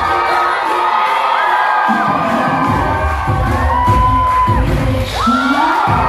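Recorded pop song with a singing voice, played loudly over a hall's sound system for a lip-sync performance, with a crowd cheering and shouting. A heavy bass beat comes in about two seconds in.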